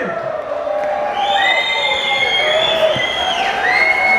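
Concert audience cheering and whistling, with several long, high whistles overlapping over the crowd noise.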